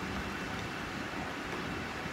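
Steady rushing background noise of a commercial kitchen, from a lit gas stove burner and ventilation, even and without clatter.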